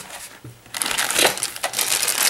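Clear plastic bag crinkling as it is picked up and handled in the hands, holding loose power-adapter plugs; the crinkling starts about a second in and keeps going.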